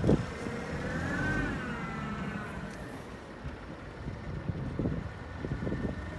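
Jungheinrich TFG 435 LPG forklift engine running as the truck drives and turns, with a whine that rises and falls in pitch during the first couple of seconds. A sharp knock right at the start and a few lighter knocks later on.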